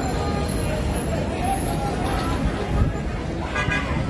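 Outdoor street crowd: many people talking at once over steady traffic noise, with a short vehicle horn toot about three and a half seconds in.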